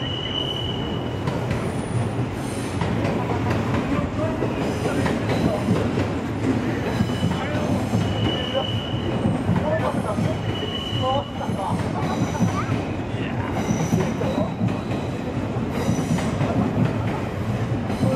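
A passenger train running past on the tracks, its steady rumble broken by several drawn-out, high wheel squeals.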